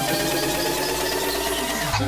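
Electronic dance music build-up: a slowly rising synth tone over a fast, repeating rhythmic pattern, with the rise cutting off near the end.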